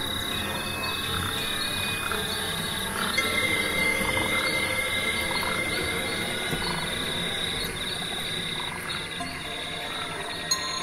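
Experimental live-coded electronic music, generated in Max/MSP from live data streamed from plants. It is a dense, steady texture with a held high tone and quick repeating chirps. A second held tone comes in about three seconds in, and the music gets a little louder there.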